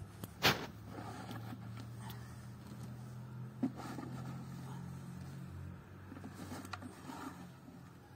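A motor vehicle's engine running steadily nearby, a low even hum, with a sharp knock about half a second in and a lighter one a few seconds later.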